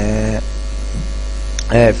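Steady, low electrical mains hum on the recording. A man's drawn-out voiced hesitation sounds at the start and near the end.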